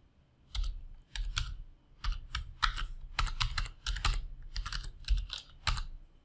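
Computer keyboard being typed on: a run of quick keystrokes in uneven clusters, starting about half a second in and stopping just before the end.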